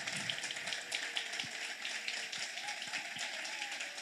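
Audience applauding: a steady patter of many hands clapping, fairly soft.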